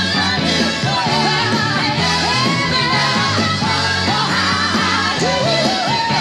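Live soul song performance: a female lead vocal bending and sliding between notes over a full band accompaniment with steady bass.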